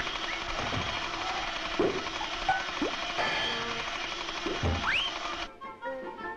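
Cartoon sound effects of a suitcase springing open and unfolding into a machine: a dense mechanical clatter and ratcheting mixed with music, with pitch glides sliding up and down and a rising whistle near the end. It cuts off suddenly shortly before the end.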